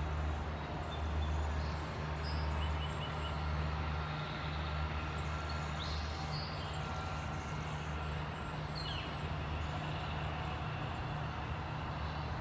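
Steady low rumble of distant road traffic, with a few short bird chirps now and then.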